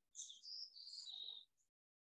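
A bird singing faintly: one short phrase of quick, clear, high notes that shift up and down in pitch, lasting a little over a second.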